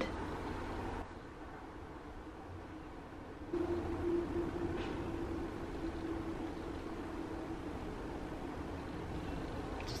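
Faint background noise, with a low steady hum coming in about three and a half seconds in and slowly fading.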